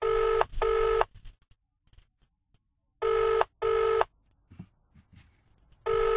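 British telephone ringback tone, heard down the line while a call rings out: two double rings about three seconds apart, with a third beginning near the end.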